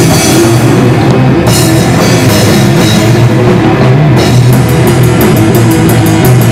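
A hardcore metal band playing live and loud: a drum kit with electric guitar. The cymbals briefly drop out twice, then about a second and a half from the end come rapid, even cymbal hits, roughly four to five a second.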